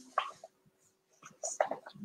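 Faint, brief snatches of a whispered voice, with a near-silent gap in the middle.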